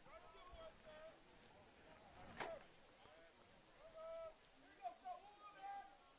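Faint, distant voices calling out across a baseball field, in short separate calls, with a single sharp knock or clap about two and a half seconds in.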